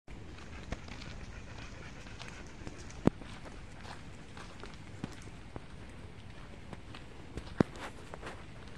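Footsteps walking on a dirt path, a scatter of small crunches and clicks over a steady hiss, with two sharp knocks, one about three seconds in and one near the end.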